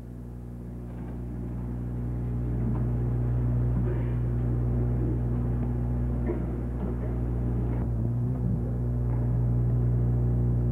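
Steady electrical mains hum on the recording, growing louder over the first few seconds and then holding, with faint rustling and small room noises beneath it.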